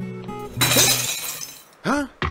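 Film-score music with plucked-string notes, cut about half a second in by a sudden, loud shattering crash that rings away over about a second. A short vocal exclamation comes near the end.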